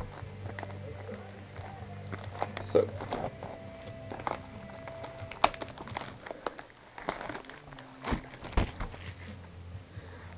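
Plastic shrink wrap crinkling and crackling in irregular bursts as it is peeled off a cardboard trading-card booster box, with a few clicks as the box is handled.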